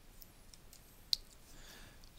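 A single computer mouse click about a second in, over quiet room tone, as the presentation slide is advanced.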